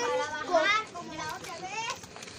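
Children's high-pitched voices calling out and chattering as they play, loudest in the first second and quieter after that.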